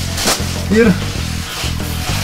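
Leafy sauna whisks rustling as they are swung over a person lying on the bench, with one swish about a quarter second in, over steady background music.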